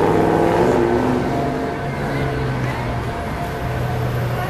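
Steady low hum of indoor shopping-mall background noise, with indistinct voices in the first second and a half.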